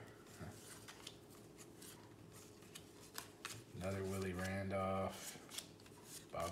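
Cardboard trading cards being flicked through one by one in the hands: a run of light, irregular clicks and soft rustling.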